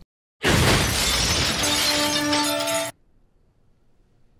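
A crashing, shattering sound effect: a loud burst of noise starting about half a second in, with ringing tones joining it midway, then cutting off suddenly near the three-second mark.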